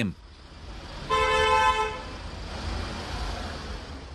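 A vehicle horn sounds once, a steady single-pitched honk lasting just under a second, over the low rumble of street noise.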